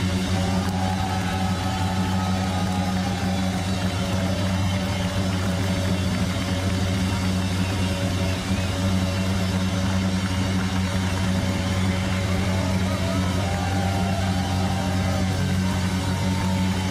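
Live rock band playing an instrumental passage: a steady, unchanging low drone under a dense wash of amplified instruments, with a faint higher melody line coming in twice, early and again near the end.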